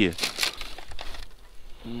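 Thin clear plastic food tray crackling and clicking as it is handled, loudest in the first half second, followed by quieter rustling.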